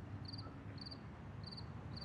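Crickets chirping: a short high trill repeating about every half second, over a faint low rumble.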